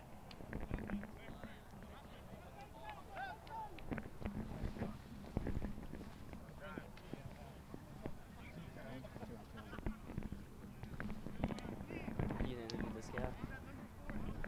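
Faint, distant voices of rugby players calling out to each other, over a steady low rumble of wind on the microphone and a few scattered knocks.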